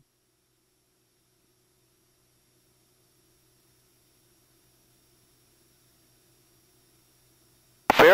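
Near silence: the sound track drops out, leaving only a faint steady hum, until a voice cuts back in right at the end.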